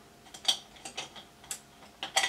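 Light clicks and clinks of makeup brushes and tools being handled while rummaging for a brush: about six small, irregular clicks in two seconds.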